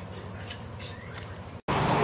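Night insects chirring, a steady high-pitched drone with faint ticks. About one and a half seconds in it cuts off abruptly and gives way to a louder, even hiss of room noise.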